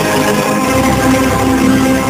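Orchestral music holding sustained chords, the closing bars of the chanson; a heavier low part comes in about half a second in.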